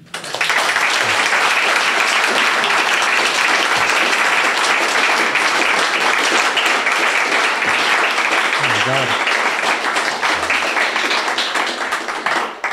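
Audience applauding loudly, a dense clapping that starts right away and thins into separate claps near the end.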